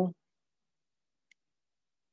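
A spoken word ends at the start, followed by near silence with a single short, faint click a little past a second in.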